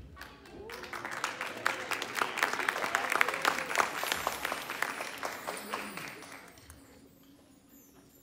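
Audience applauding, starting about a second in, peaking midway and dying away near the end.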